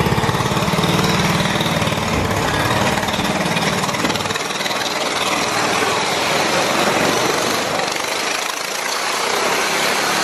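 A small go-kart engine running loud as the kart rides around the wooden wall of a Wall of Death motordrome. A deeper engine hum in the first few seconds drops away about four seconds in.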